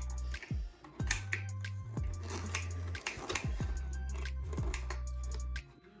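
Small electric screwdriver running in several bursts of a second or two, backing out the screws that hold a diecast model car to its packaging, with sharp clicks and rattles from the screws and plastic.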